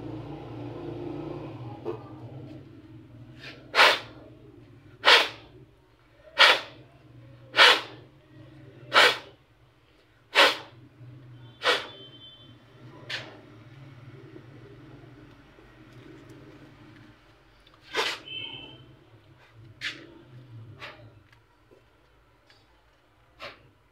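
A toner cartridge knocked repeatedly against the work table: seven sharp knocks about a second and a quarter apart, then a few weaker, scattered knocks later on.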